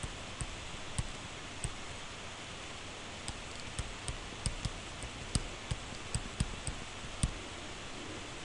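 Stylus tapping and clicking on a tablet screen during handwriting: short, sharp, irregular clicks, one or two a second, over a steady hiss.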